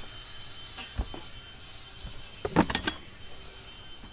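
Rummaging through a storage bin of gear and tools: a low thump about a second in, then a quick clatter of hard objects knocking together a little past halfway.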